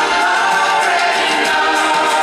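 Live band music with electric guitar and many voices singing together, a concert audience singing along over the band.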